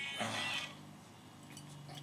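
A man's short spoken "uh", then low room sound with a few faint clicks near the end.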